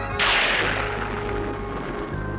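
A sudden loud crash about a quarter second in, with a long hissing fade over about a second and a half, from a cartoon soundtrack over background music.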